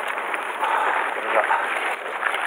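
Crushed ice rustling and crunching inside a plastic cooler box as a freshly caught fish is pressed into it by hand.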